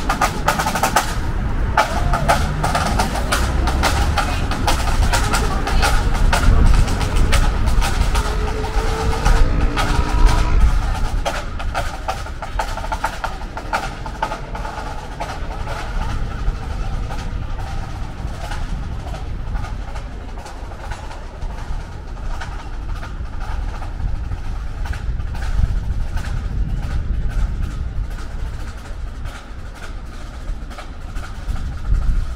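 Road traffic at a city junction, with a vehicle passing about ten seconds in. A fast run of clicks fills the first ten seconds or so, then thins out.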